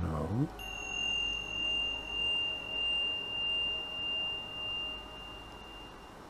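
A single high, pure ringing tone, like a struck chime or tuning fork, starting about half a second in and ringing steadily for about five seconds, its strength wavering slowly as it fades toward the end.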